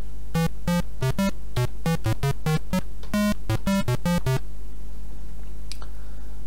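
Square-wave tones from a home-made software synthesizer, played from a computer keyboard as a quick run of short notes of varying pitch, about four a second, stopping about four and a half seconds in. A steady low hum sits underneath.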